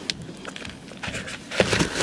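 An American bison nosing into a plastic cup of feed held out of a car window: irregular rustling and scraping noise that starts small and grows loud toward the end.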